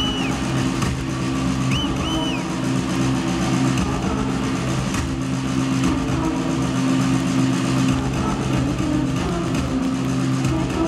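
Rock band playing live without singing: loud, heavily distorted electric guitar and bass holding a sustained low chord, with a couple of short high whistle-like tones in the first two seconds.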